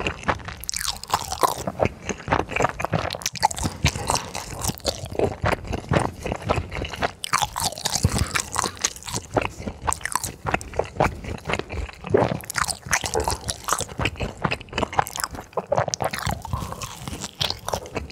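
Crisp fried food being bitten and chewed close to the microphones: a dense, irregular run of crunches and crackles.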